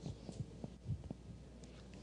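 A few faint, short low thumps over a steady low electrical hum.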